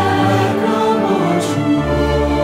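SATB church choir singing sustained chords in a sacred anthem, with instrumental accompaniment beneath; a new bass note enters near the end.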